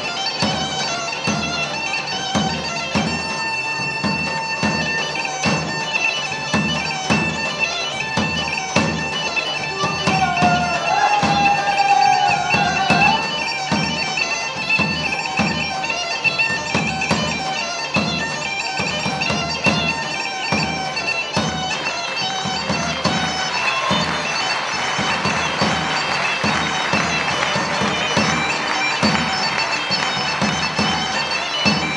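Live traditional Greek folk dance music led by a bagpipe, its melody over a steady drone, with a drum keeping a beat about twice a second.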